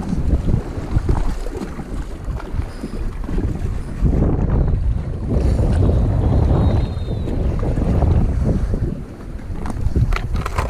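Wind buffeting the microphone: a loud, gusting rumble that dips briefly about nine seconds in.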